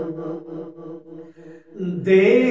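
A man chanting a hamd, an Urdu devotional poem in praise of God. A long held note fades away, and a new sung phrase rises in near the end.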